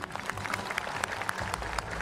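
Light applause from a crowd: many separate, irregular hand claps.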